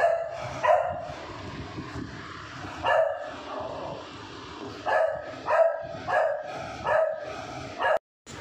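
A dog barking, about eight short loud barks: a few spaced out at first, then coming in a quicker run in the second half.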